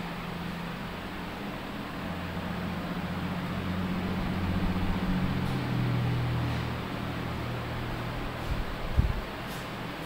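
A steady low mechanical hum over background hiss, swelling louder through the middle and easing off again, with a single thump about nine seconds in.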